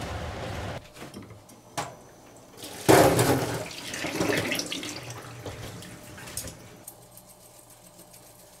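Hot water from a saucepan of boiled edamame poured through a metal colander into a stainless steel sink, with the tap running. The splashing starts suddenly about three seconds in and fades away over the next few seconds, after a steady rushing sound stops early and a single click.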